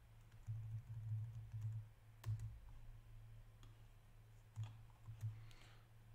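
A few separate, faint computer mouse and keyboard clicks as text is selected and copied, over a steady low electrical hum.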